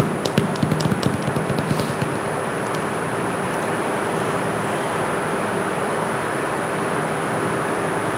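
Steady, even background noise, with a quick, irregular run of clicks and taps in the first two seconds.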